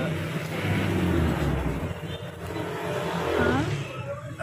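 A motor vehicle's engine rumbling as it passes, loudest about one and a half seconds in, then fading.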